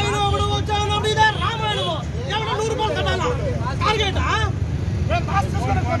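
Men's raised voices arguing in a street crowd, one voice loud and shouting, over a steady low rumble of street traffic.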